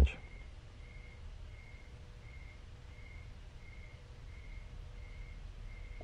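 Faint room noise with a low hum, and a soft high chirp repeating evenly about eight times, a little under a second apart.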